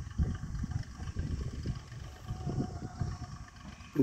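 A tractor running slowly at a distance, heard as an uneven low rumble with a faint thin whine about two seconds in.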